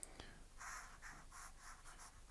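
Felt-tip pen drawing on paper, faint, in several short scratchy strokes that start about half a second in.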